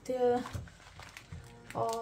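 A woman's voice with drawn-out, held sounds at the start and again near the end. In the quieter stretch between, there is faint rustling of baking paper as a sheet of ready-made pizza dough is unrolled on it.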